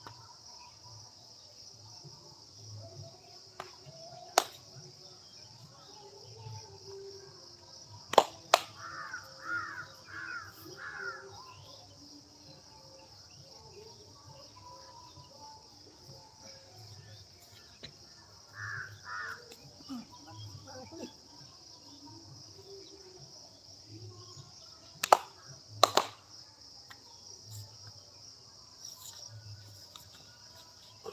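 Open-air wrestling-pit ambience under a steady high insect drone. Crows caw in a run of four calls about nine seconds in and twice more near the middle. A handful of sharp smacks, in pairs, come from the wrestlers' bodies slapping as they grapple.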